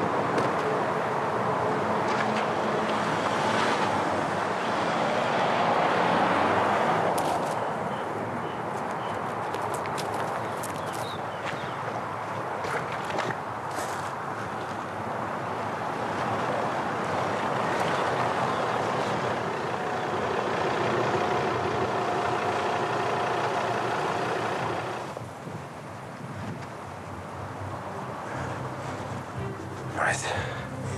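Tense drama score: a dense, sustained drone with scattered sharp clicks, over a low vehicle rumble; it drops in level near the end.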